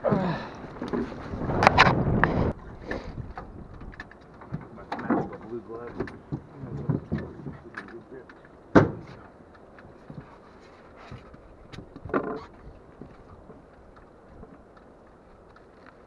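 Water splashing and streaming off a large musky as it is lifted out of a boat's holding tank. This is followed by quieter handling noises on the aluminium boat deck, with a sharp knock about nine seconds in and a smaller one about three seconds later.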